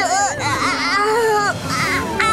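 A cartoon character's voice crying in pain, in high, wavering wails. Near the end a single tone slides steadily downward.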